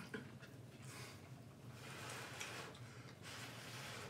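Faint eating sounds: a fork lifting noodles from a plastic bowl, with quiet breathing and a few light clicks.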